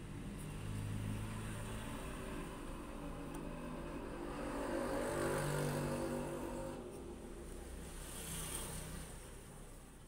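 A motor vehicle's engine grows louder to a peak about halfway through, then fades away, as a vehicle passing by.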